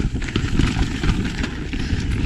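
Yeti enduro mountain bike descending a dry, loose dirt trail at speed: steady tyre noise over dirt and stones with a constant patter of small knocks and rattles from the bike.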